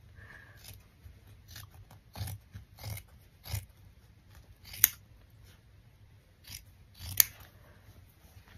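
Scissors cutting into an old blanket: a series of short snips, the two sharpest about five and seven seconds in, with softer cuts and fabric handling between.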